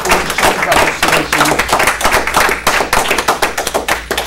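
A group of people applauding: many hand claps close together, kept up steadily.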